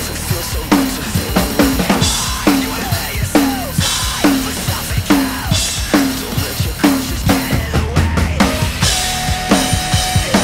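Pearl Masterworks drum kit with Sabian cymbals played hard in a steady metal groove: driving kick and snare strikes with crash cymbal hits every couple of seconds, over a recorded backing track of the song.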